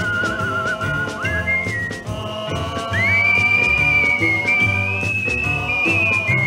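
Instrumental intro of a 1950s Sun Records rockabilly ballad in mono: a high, wavering lead melody that slides up into long held notes over a steady bass and drum beat.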